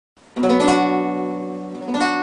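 Nylon-string classical guitar fingerpicked: a few notes plucked in quick succession about a third of a second in, ringing together and slowly fading, then a new note plucked near the end.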